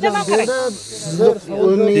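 Men talking, with a high hiss over about the first second that then stops.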